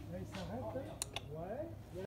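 Indistinct talking voices over a low steady hum, with two sharp clicks in quick succession about a second in.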